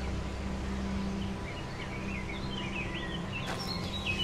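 Small birds chirping, a run of short quick up-and-down notes starting about a second and a half in, over a steady low hum.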